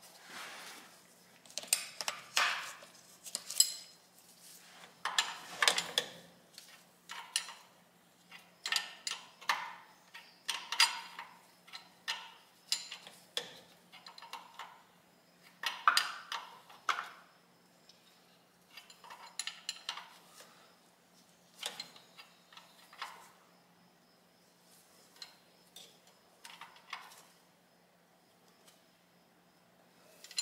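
Steel wrench clinking against the fuel-line fitting of a Cummins 6BT diesel as it is tightened by hand. The short clinks come in quick strokes, about one or two a second, and thin out in the last few seconds. A faint steady hum runs underneath.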